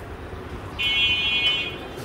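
Electronic buzzer of a digital solar charge controller giving one steady high-pitched beep about a second long, starting near the middle.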